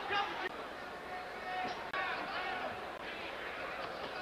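Boxing-arena crowd noise: a steady murmur of many spectators' voices, with a few voices briefly standing out.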